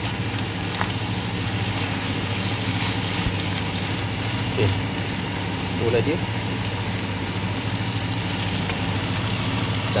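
Pasta, tuna, tomato and basil cooking in a frying pan and stirred with a wooden spoon, with a soft frying sizzle under a steady low hum.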